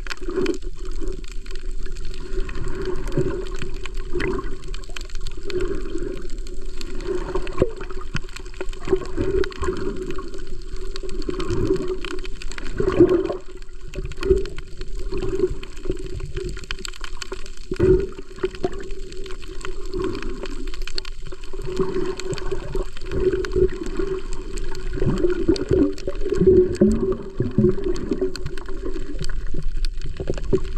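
Water gurgling and sloshing in irregular surges over a steady low hum.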